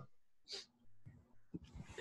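Near silence on the call line, with one brief faint hiss about half a second in and a few faint low sounds later.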